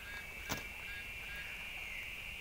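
A steady high-pitched buzz, with one sharp click about half a second in as small bolts and washers are handled in a plastic bag.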